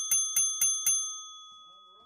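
A small bell struck rapidly, about four strikes a second, its ringing fading away after the last strike a little under a second in.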